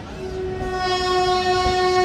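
Train horn sounding one long, steady blast that starts just after the beginning and grows louder, over the low rumble of passenger coaches rolling past.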